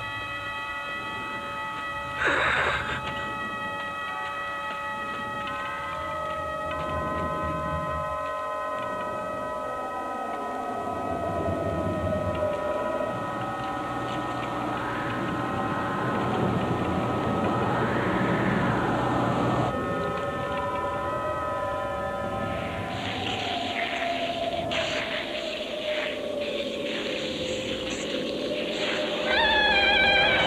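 Eerie film score of sustained, droning tones layered into a chord, with slow pitch glides sliding up and down beneath it. A sudden loud swell cuts in about two seconds in, and a hissing, flickering texture joins over the last several seconds.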